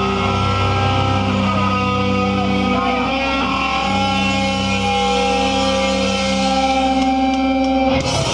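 Hardcore band playing live: distorted electric guitars hold long ringing chords that change pitch a few times, with little drumming under them.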